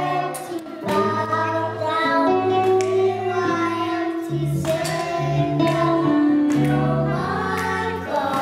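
Children's choir singing a song into microphones, backed by a live band with drums and guitar, with held low notes under the voices and regular cymbal strikes.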